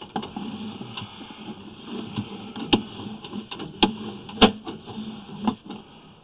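Sewer inspection camera's push cable and reel being fed into the drain line: an irregular clatter of small clicks and rattles, with a few sharp knocks, the loudest about four and a half seconds in.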